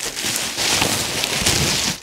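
Plastic bubble wrap rustling and crinkling steadily as a large sheet is handled and pulled over a frame, with small crackles running through it.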